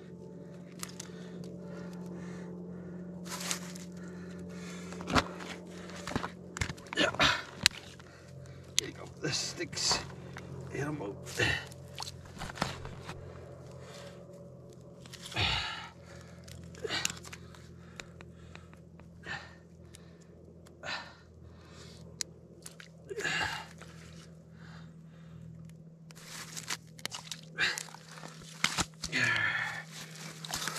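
A gillnet being worked by hand on the ice, a fish being pulled free of the wet mesh, heard as scattered crunches and clicks of ice, snow and net. A steady low hum runs underneath.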